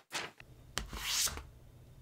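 Slide-transition swish sound effects as on-screen text animates in: a brief swish near the start, then a click and a louder swish that swells and fades about a second in, over a faint low hum.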